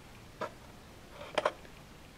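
A few light clicks: a single one about half a second in, then a quick pair about a second later.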